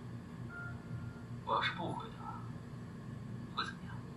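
Quiet Mandarin dialogue from a TV drama: one short spoken phrase about one and a half seconds in and a brief word near the end, over a low steady hum.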